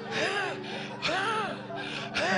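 A man's wordless voice through a microphone: short gasping, sighing sounds, each rising and falling in pitch, three or four times, over a low steady hum.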